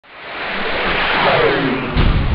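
Logo intro sound effect: a whoosh of noise swelling in from silence with a falling tone sweeping down through it, landing in a deep low boom right at the end.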